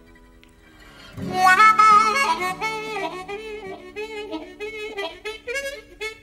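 Instrumental music: after a faint lull, a harmonica melody with wavering, bent notes comes in about a second in over a held low note.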